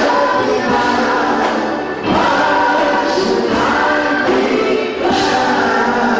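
Choir singing gospel music, held notes in phrases a second or two long.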